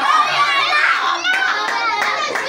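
A crowd of young children's voices talking and calling out over one another.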